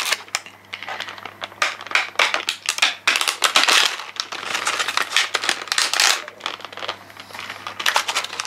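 Clear plastic clamshell pack crinkling and crackling in a run of irregular clicks as hands squeeze it and pry it open.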